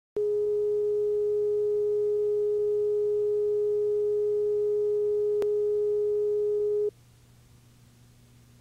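Steady reference test tone, a single unchanging pure pitch, recorded under a commercial's slate on a broadcast videotape. It cuts off suddenly about seven seconds in, leaving faint tape hum and hiss. A single click comes about five seconds in.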